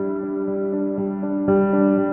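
Background music: soft ambient instrumental of held, sustained notes, with a new chord coming in about a second and a half in.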